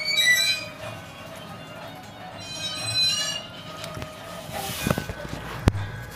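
Rose-ringed parakeet giving two shrill calls, one short and wavering at the start and a longer, steadier one about halfway through. Near the end come a couple of dull knocks and a sharp click.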